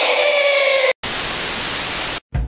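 A held tone over a bright hiss cuts off just under a second in. After a brief gap, loud, even TV-style static white noise follows.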